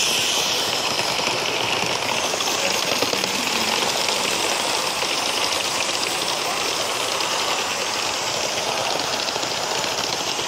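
Live steam model locomotive running past close by: a steady hiss of steam with an even, rapid clatter from the engine and wheels on the track.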